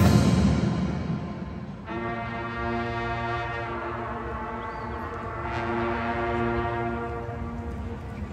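Marching band holding a loud sustained chord that fades away over the first two seconds, then a new, quieter sustained chord that enters about two seconds in and holds, swelling slightly near the end.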